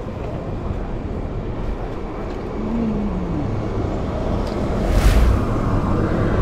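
Wind rushing over an action camera's microphone on a moving bicycle, mixed with city street traffic. A falling tone passes about three seconds in, and a louder whoosh comes about five seconds in.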